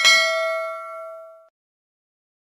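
A bell-chime 'ding' sound effect from a subscribe-and-notification-bell animation. It is struck once and rings out, fading away within about a second and a half.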